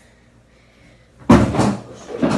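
A hard object knocking against a hard surface: one sudden loud bang about a second and a quarter in, with a short clatter trailing after it.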